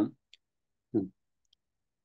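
A pause in a man's lecture speech: a word ends right at the start, a short pitched hesitation sound comes about a second in, and a few faint clicks fall around it.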